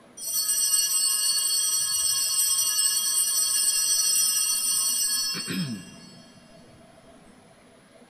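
Altar bells rung steadily for about five and a half seconds at the elevation of the chalice after the consecration, then stopping; a man clears his throat as they stop.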